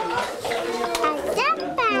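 Young children's voices and chatter, with one child's high-pitched voice rising near the end.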